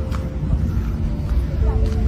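Wind buffeting a phone's microphone outdoors as a heavy, steady low rumble, with faint voices and a low hum behind it.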